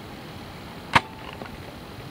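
A single sharp knock or click about a second in, over the steady hiss of an old tape recording of a lecture room.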